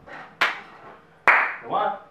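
Hand claps at an even, slow beat of about one a second, two in this stretch, the second one louder, with a short vocal sound right after it.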